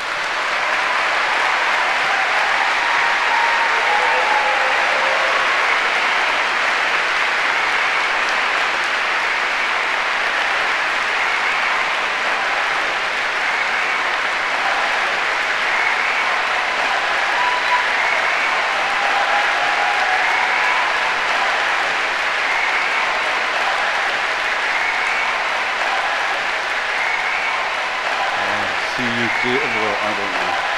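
A large audience applauding, building up within the first second and then holding loud and steady.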